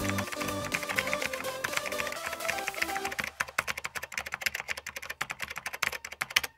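Keyboard-typing sound effect: a quick, uneven run of key clicks that gets denser about halfway through, with background music under it that drops away at the same point.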